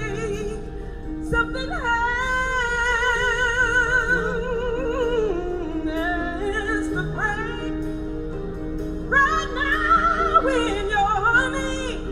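Female gospel singer singing live with a band: long held notes with wide vibrato and melismatic runs over steady held accompaniment chords.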